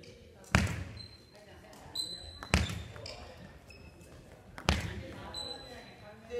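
Badminton hand-fed lob drill on a wooden gym floor: three sharp smacks about two seconds apart as the racket strikes the shuttlecock with a lunging footfall, and short high squeaks of court shoes on the floor between them.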